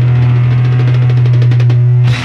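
Closing bars of a late-1960s psychedelic rock song: a loud held low note under a fast drum roll that thickens in the second half, building toward the final stroke.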